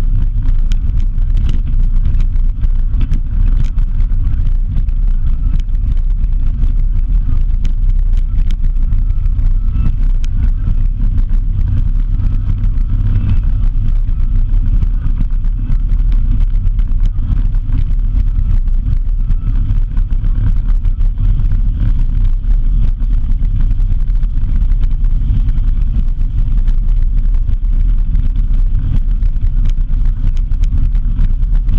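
Steady low rumble of a vehicle travelling on a dirt road, wind buffeting the microphone and tyre noise on the gravel, with faint ticks of grit throughout.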